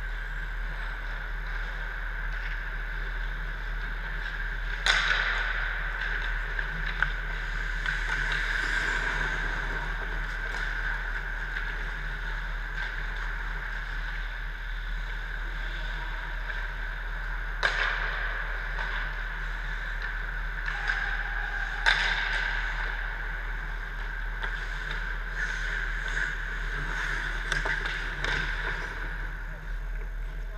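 Indoor ice rink during hockey play: a steady machinery hum under sharp cracks of pucks and sticks from across the ice, one about five seconds in and two more later on. Clicks and skate scrapes come thick and fast near the end as players skate in close.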